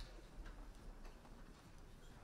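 Faint footsteps on a wooden stage floor, a few soft clicks about half a second apart over the low room tone of a quiet hall.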